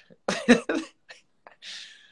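A man's short laugh: a few quick breathy bursts in the first second, then a soft exhale near the end.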